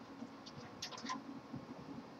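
Faint, irregular scratching and light clicks of a 45-degree swivel water-cooling fitting being twisted and unscrewed by hand from a CPU water block.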